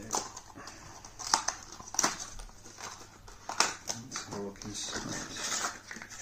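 Sturdy plastic and card packaging being pried open by hand: a handful of sharp snaps and clicks with crinkling between them. A brief pitched whine comes a little after the middle.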